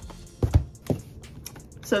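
Handling noises on a tabletop: a few knocks and clicks as packaged items are set down and a cardboard box is picked up. The loudest knock comes about half a second in, with another just before one second.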